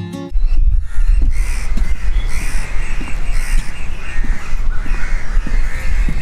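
Background guitar music cuts off just after the start. Birds call repeatedly over a loud, steady low rumble.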